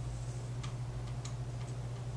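Steady low hum of a meeting room, with a few faint light clicks at uneven intervals.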